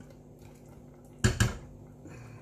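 Two sharp metal knocks about a fifth of a second apart, a little over a second in: a stainless steel saucepan striking the rim of a pressure cooker as masala is tipped and scraped out of it.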